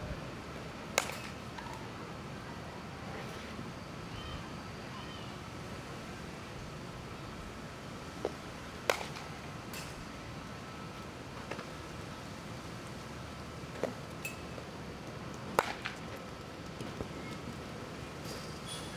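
A baseball bat hitting baseballs for fly-ball practice: three sharp cracks, about seven seconds apart, with a few fainter knocks between them, over steady outdoor wind noise.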